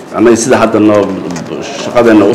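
Speech only: a man talking in a steady, unbroken stretch.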